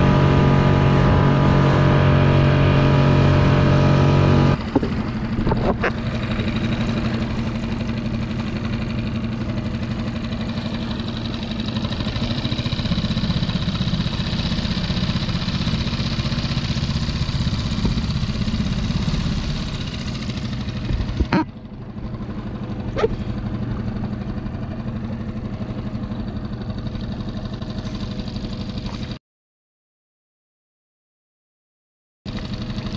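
Small boat's outboard motor running under way with a steady, strongly pitched hum. About four and a half seconds in it changes abruptly to a lower, rougher running, with a couple of sharp knocks later on, and the sound cuts off suddenly near the end.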